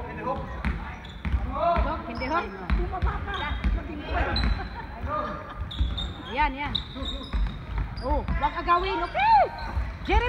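Basketball being dribbled on a sports-hall floor during a game, repeated thuds echoing in the hall, with short high squeaks of sneakers on the court and players calling out. Near the end someone exclaims "oh my god".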